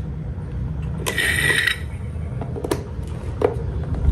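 Electric desk fans running with a steady low rumble of motor and moving air, with several sharp clicks and a brief rattling scrape about a second in.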